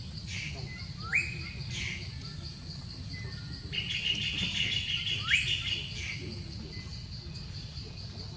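A bird calling outdoors: two short rising whistles about a second in and again past five seconds, with a burst of chatter between them. Underneath runs a steady high-pitched pulsing buzz and a low rumble.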